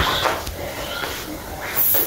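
Background music fading out at the start, then a quiet room with faint voices and a short breathy hiss near the end.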